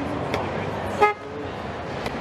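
A single short horn-like toot about a second in, over the steady babble of a crowded exhibition hall.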